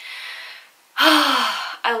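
A woman's sigh: a faint breath in, then about a second in a loud breathy exhale whose voiced pitch falls, lasting under a second.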